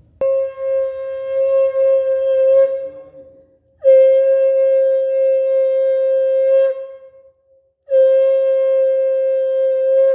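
Conch shell (shankh) blown in three long, steady blasts on one held note, each about three seconds, with short breaks for breath between them.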